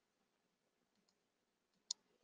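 Near silence, with one short sharp click just before the end: a computer mouse click advancing the presentation to the next slide image.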